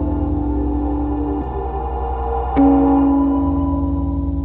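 Slow, ambient guitar-duet music: sustained notes ring over a low drone, and a new note is struck about two-thirds of the way in and rings on.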